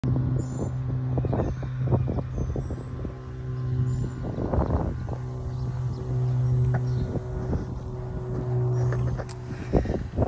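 Gusty wind buffeting the phone's microphone, in irregular rumbling gusts, over a steady low hum.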